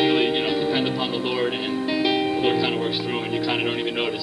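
Live praise and worship music: voices singing a held, slow-moving melody over instrumental accompaniment.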